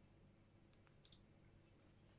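Near silence with a few faint clicks from a smartphone in a clear plastic case being handled and turned over in the hands, the loudest a quick double click about a second in.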